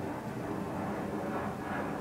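Jet aircraft flying overhead: a steady rushing noise, almost like a fighter jet.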